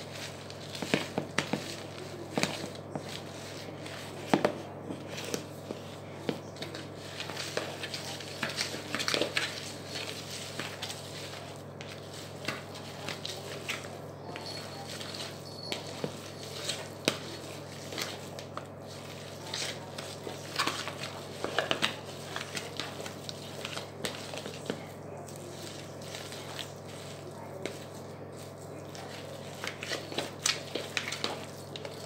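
A fork mashing a raw burger mince mixture in a plastic bowl: irregular clicks and taps of the fork against the plastic, over a steady low hum.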